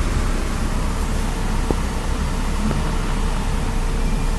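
Car engine and low road rumble heard from inside the car, steady, as it pulls away from a toll booth. One faint short tick comes about halfway through.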